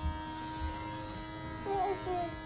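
Electric hair clippers buzzing steadily as they are run through a child's hair.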